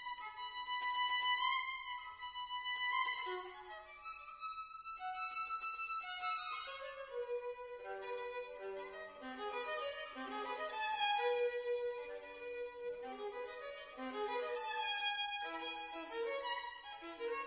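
Solo violin playing a passage from a contemporary chamber violin concerto, a long held note in the first few seconds and then a moving line of shorter notes.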